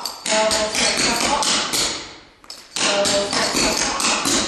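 Clogging shoe taps striking a wooden floor in a single Burton step (double step, pop, step). There are two quick runs of sharp taps, each about two seconds long, with a short pause between.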